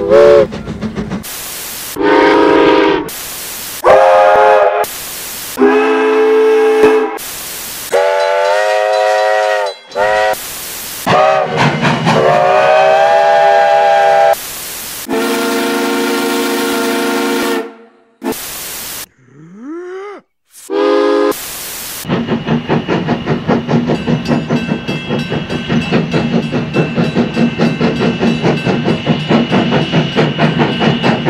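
A string of short steam locomotive whistle blasts at several different pitches, many sounding several notes at once like chime whistles, spliced together with brief bursts of hiss between them. Near 20 s one whistle sweeps upward in pitch. From about 22 s a steam locomotive is working, with fast rhythmic exhaust beats.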